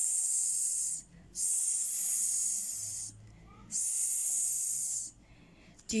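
A woman voicing the letter S's /s/ sound as three long, high-pitched hisses, "sss… sss… sss", each about a second or more long, with short breaks between.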